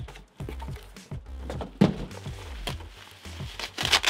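Background music with a steady bass line, over which a cardboard shipping box is cut open and unpacked. A knife slits the packing tape, there is a sharp thump about two seconds in, and plastic packing rustles near the end.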